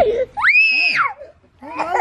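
A short, loud, high-pitched scream that rises, holds steady for about half a second, then drops off. Voices start up near the end.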